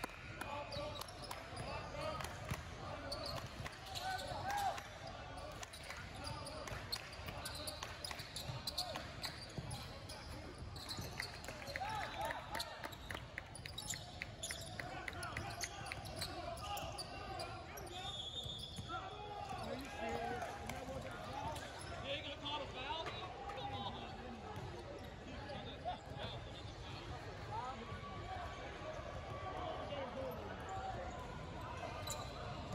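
Basketball bouncing and being dribbled on a hardwood court, with a steady run of dribbles in the middle, among indistinct voices of players and spectators echoing in a large gym.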